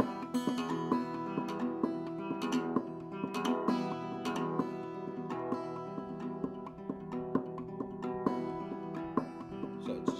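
Acoustic guitar played clawhammer style with no strums: a quick, steady run of plucked notes ringing together, one fingernail strike followed by three thumb notes, over and over.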